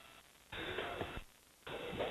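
Two short bursts of a voice on the launch control radio loop, thin and band-limited like a radio channel, the second louder near the end. Faint hiss from the downlink audio cuts off just before them.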